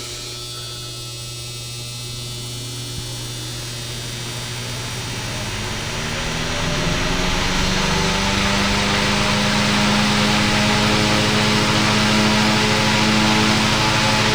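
A 1940s A.C. Gilbert Polar Cub 12-inch electric fan, its motor freshly oiled, switched on and spinning up to speed: a whir that rises in pitch and grows louder over about the first ten seconds, then holds steady. Under it runs a steady electrical buzz, which the owner traced to frayed wiring and worn solder connections.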